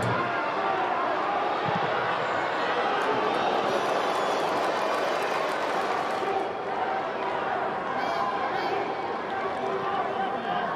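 A television football commentator talking steadily over stadium crowd noise.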